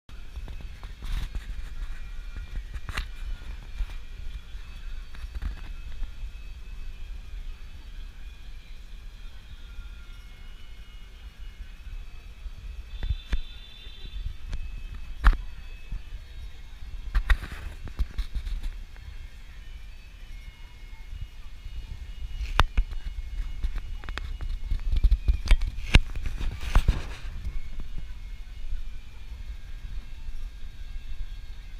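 Outdoor ambience: a fluctuating low rumble of wind on the microphone, with scattered sharp knocks and clicks.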